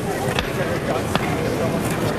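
Street ambience with a few sharp knocks of stone being tapped, as paving workers set cobblestones.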